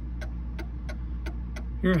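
Mantel clock's escapement ticking, pallet on escape wheel, about three to four ticks a second. The clock has been set slightly out of beat, so the tick is heavier on one side. A steady low hum runs underneath.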